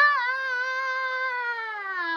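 A child's voice holding one long high sung note, steady and then sliding down in pitch near the end.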